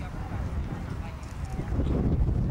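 Hoofbeats of a show-jumping horse cantering on a grass arena.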